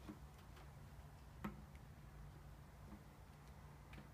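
Near silence: room tone with a few faint clicks and knocks, the most distinct about a second and a half in.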